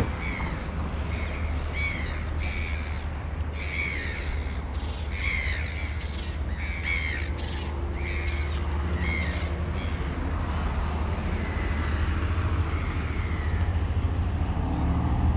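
A bird calling over and over, roughly once a second, the calls stopping after about ten seconds, over a steady low rumble.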